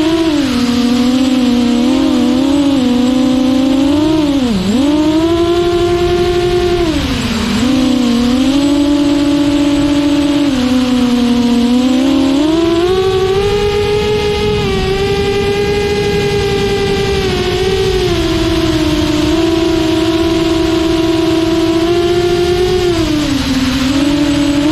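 6-inch quadcopter's motors and two-blade propellers whining and buzzing in flight, heard close-up from the camera mounted on the quad. The pitch dips sharply about four and a half seconds in and again about seven and a half seconds in as the throttle is cut back. It steps up and holds higher from about twelve seconds in, then dips briefly near the end.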